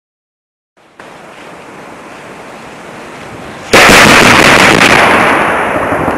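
Open-air detonation of an explosive charge in a detonation-transfer (sympathetic detonation) test: a single sudden, very loud blast about two-thirds of the way in, dying away slowly over the following seconds. Before it there are a few seconds of steady outdoor background noise.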